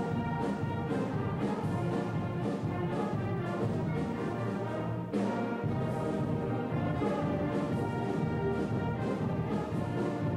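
Eighth-grade concert band playing, brass to the fore, over a steady beat. About halfway through there is a brief drop, then the full band comes back in together.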